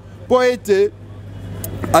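A man's voice speaks one short phrase, then in the pause a low, even rumble of road traffic grows steadily louder, over a constant low hum.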